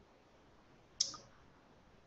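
A single short, faint click about a second in, otherwise near silence.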